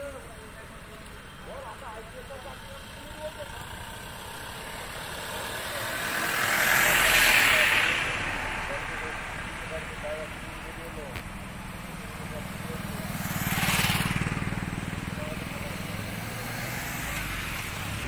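Vehicles passing close by on an open road, twice: a loud swell of noise that rises and fades about seven seconds in, then a second, smaller pass-by with a low engine hum around fourteen seconds. Faint voices in the background.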